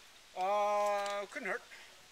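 A person's voice holding one steady drawn-out note for about a second, followed by a short sliding syllable.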